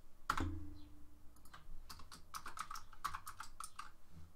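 Typing on a computer keyboard: a single keystroke, then a quick run of keystrokes from about two seconds in.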